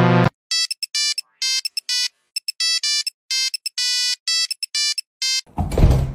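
Electronic ringtone-style melody of short, clean beeping notes in quick phrases, a few notes a second, opened by a brief loud low buzz. Near the end it stops and a loud low thump and rumble takes over.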